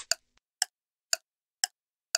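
Clock-tick sound effect of a quiz countdown timer, ticking evenly about twice a second: four sharp ticks while the answer time runs down.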